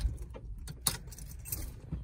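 Keys jangling on their ring in a Jeep's ignition as the key is turned, a run of light irregular clicks, just after the failing engine has stalled.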